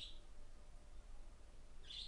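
A quiet pause of low steady hum, with a faint short hiss right at the start and another near the end.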